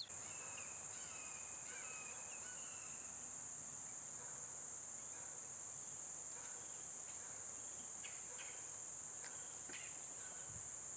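Chorus of insects, crickets or similar, making a steady high-pitched drone without a break, with a few faint chirps.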